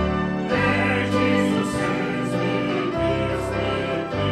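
Church choir singing a gospel hymn chorus over an instrumental accompaniment whose held low chords change every second or so.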